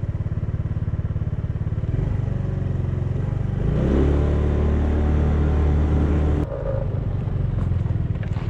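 Small motorcycle engine running as it is ridden. It picks up revs about two seconds in and rises again near four seconds, holds, then drops back abruptly about six and a half seconds in.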